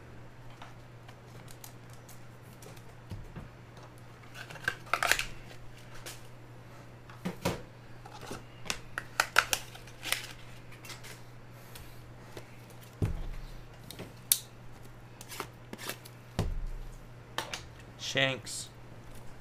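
Topps Formula 1 trading cards being handled and sorted: scattered short clicks, slides and rustles of card stock, with two low thumps against the table in the second half. A steady low hum runs underneath.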